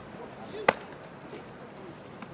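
A single sharp crack of a baseball impact about two-thirds of a second in, short and clean.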